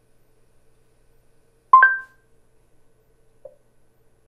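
Google Home Hub smart display answering a spoken command with a short two-note electronic chime, the two tones struck together, the higher one ringing on a moment longer. A faint short blip follows near the end.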